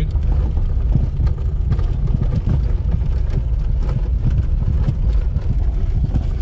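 A Lada Samara (VAZ-2108) 1500S heard from inside the cabin as it crawls up a rough gravel track: a steady low rumble of engine and tyres. Small knocks and rattles are scattered through it, from the body and suspension jolting over stones.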